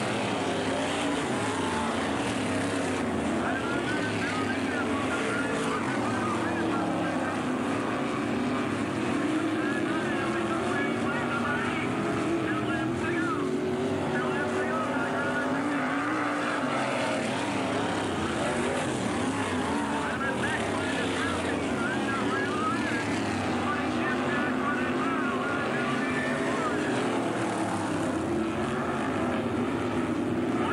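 Several modified race cars running laps on a dirt oval. Their engines overlap and rise and fall in pitch continuously as the cars accelerate and pass.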